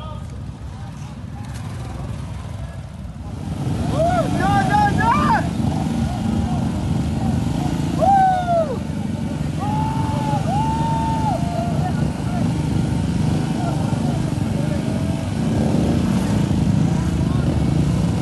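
Several Royal Enfield motorcycles running close by, their engine sound growing louder about three or four seconds in, with spectators shouting over it.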